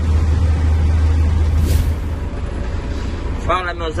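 Truck engine heard from inside the cab, a steady low drone; about a second and a half in comes a short hiss, after which the engine sound drops lower. A man's voice starts near the end.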